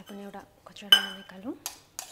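Steel spoon stirring and scraping in a stainless-steel bowl of yogurt raita. There is one loud ringing clink of metal on metal about a second in, and sharper taps near the end.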